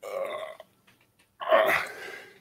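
Two short throaty vocal noises from a man, the second louder than the first, with a pause of most of a second between them.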